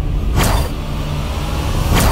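Dramatic background-score sound effects: a steady deep rumbling drone, with a sharp whoosh about half a second in and another at the end.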